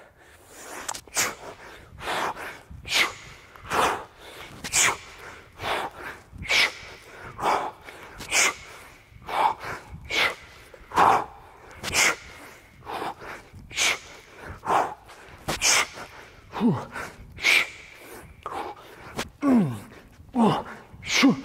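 A man breathing hard from exertion, with a sharp, forceful puff of breath about once a second as he swings a heavy club, and a couple of short grunts near the end.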